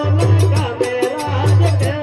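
Live Rajasthani devotional bhajan music: a harmonium holding a melody over a dholak drum beat, with small manjira hand cymbals ticking a fast, steady rhythm several times a second.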